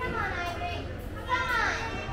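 Children's voices calling out in a large hall, with one loud high-pitched shout, falling in pitch, about a second and a half in.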